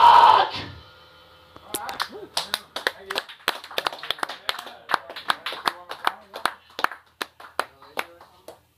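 A loud live band finishes its song abruptly about half a second in. After a short lull, a small audience claps in scattered, separate claps for several seconds, with voices among them.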